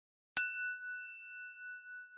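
A single bright chime struck about a third of a second in, its clear ringing tone fading slowly over the next second and a half.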